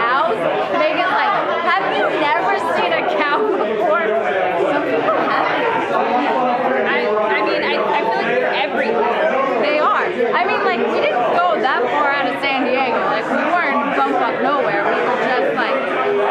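Steady chatter of many overlapping voices in a crowded, busy room.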